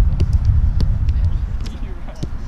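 Heavy wind rumbling on the microphone, with faint voices and several short, sharp knocks.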